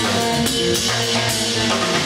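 Live instrumental prog-rock band playing: a drum kit with busy hits under an electric guitar and a Nord Stage keyboard.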